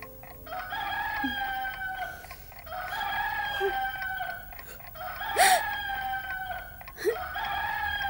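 Rooster crowing: four long, drawn-out crows one after another, each slowly falling in pitch, with a sharp louder call in the middle.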